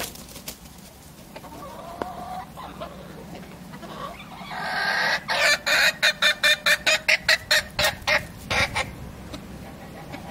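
Transylvanian naked neck chickens clucking softly, then one bird breaking into a loud, rapid run of calls, about four a second, lasting nearly four seconds.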